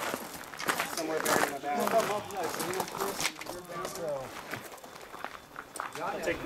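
Indistinct chatter of several people talking, with footsteps on gravel and a few short sharp knocks.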